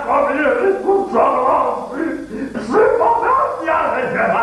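One voice talking fast and animatedly in an exaggerated comic manner, a run of rapid syllables the speech recogniser could not make into words.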